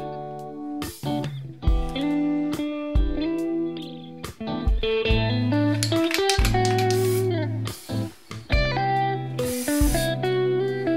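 Background music: an instrumental track with an electric guitar, the self-built Harley Benton ST-style kit guitar, playing a melody over a backing, with a bent note about seven seconds in.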